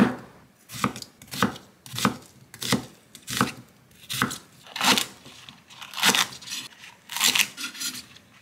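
Kitchen knife chopping a white onion, then a thick green onion, on an end-grain wooden chopping board. The cuts come in a steady run of about a dozen, roughly one every two-thirds of a second, each ending in a knock of the blade on the wood.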